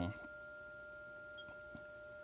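An Icom IC-7300 transceiver's speaker sounding two steady pure tones, a lower and a higher one, held without change. They are an 800 Hz amplitude-modulated test signal from a Siglent signal generator received in CW mode: the carrier and one sideband come through as two separate beat tones.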